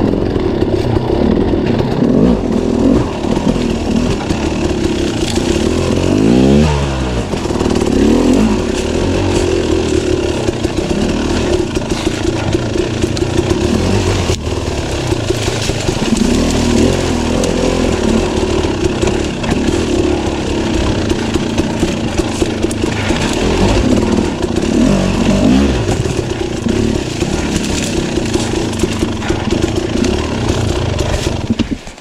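Enduro dirt bike engine heard on board, its revs rising and falling as it is ridden. About six seconds in, the revs drop and then climb sharply.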